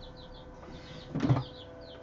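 Young chicks peeping steadily in the background, several short high peeps a second, over a faint steady hum. A brief handling noise about a second in.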